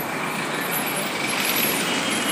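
Steady road traffic noise from passing vehicles, including buses.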